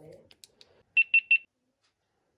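GoPro HERO9 Black action camera powering on: a faint click or two from its button, then three short, quick, high beeps about a second in.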